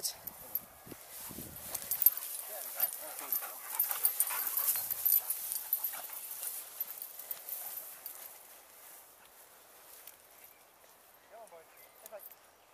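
Tall grass swishing and rustling as dogs and a walker push through it, busiest in the first half and dying down later, with a few short dog whimpers.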